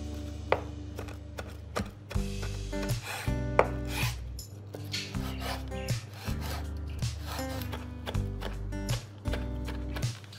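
Chef's knife chopping fresh rosemary on a wooden cutting board: irregular knife strokes on the wood, with a rubbing, scraping sound as the blade rocks through the herb. Background music plays underneath.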